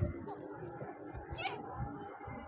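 Wind buffeting the microphone on open water, with a brief high-pitched call about one and a half seconds in.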